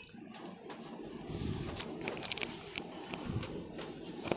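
Faint rustling of a four-ply silk saree being handled and spread out, with a few light clicks a little past halfway.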